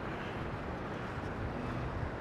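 Steady low drone of distant engines with wind on the microphone.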